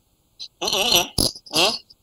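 A man's voice making short vocal sounds, starting about half a second in and running on in quick broken bursts.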